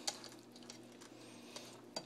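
Faint, soft wet squishing of a hand rubbing marinade into raw bone-in chicken breasts, over a faint steady hum, with a couple of light ticks.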